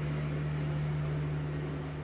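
Lawn mower engine running outside, heard indoors as a steady low drone.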